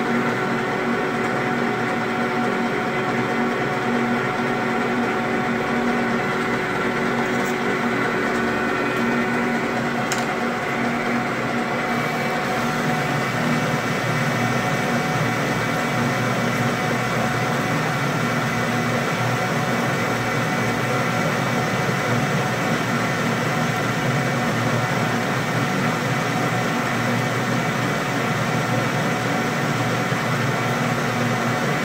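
A metal lathe running steadily, its drive giving a whine of several steady tones, while it takes a heavy cut, about a tenth of an inch deep, on a steel bar. About twelve seconds in, a brighter hiss joins the whine.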